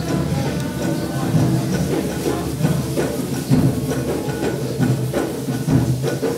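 Live acoustic music: a bowed wooden fiddle playing with hand percussion, whose sharp strikes fall every half second or so.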